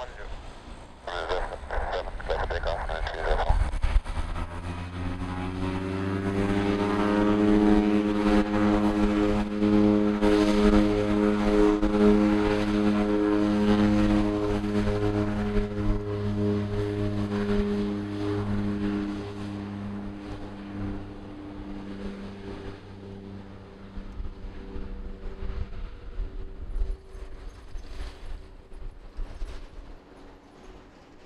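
De Havilland Canada DHC-6 Twin Otter's two PT6A turboprops going to takeoff power. A stack of propeller tones rises in pitch over a few seconds, then holds steady and loud through the takeoff roll. It fades gradually over the last ten seconds as the aircraft moves away and lifts off.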